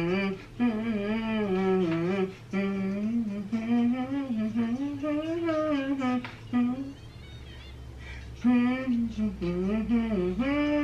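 A person humming the melody of a Christmas song in held, gliding notes, with a short pause about two thirds of the way through.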